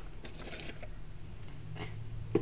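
Quiet room tone with a low, steady hum.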